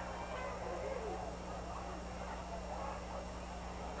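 Faint stadium crowd chatter and murmur under a steady low electrical hum from the old broadcast tape.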